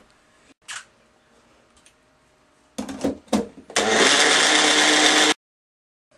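Electric Jack LaLanne juicer motor running at full speed for about a second and a half, then stopping dead. Before it start there are a few knocks and clicks of handling.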